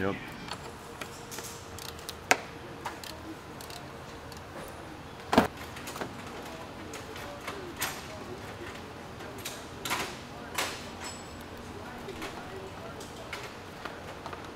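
Scattered clicks and metal knocks of hand work on parts under a car, two sharper knocks about 2 and 5 seconds in, over a steady hum.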